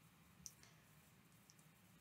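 Near silence: room tone, with one faint short click about half a second in and a fainter tick later.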